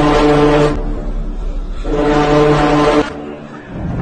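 A deep horn sounds two long, steady blasts over a low rumble. The first blast ends under a second in; the second runs from about two to three seconds in.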